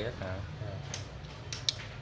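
A few sharp clicks from a refrigerator control board being worked on at the bench, the loudest near the end, over a steady low hum.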